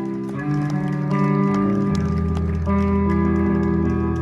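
A live band playing the opening of a song through a PA: guitar notes carry the intro, and a deep bass line joins about halfway through.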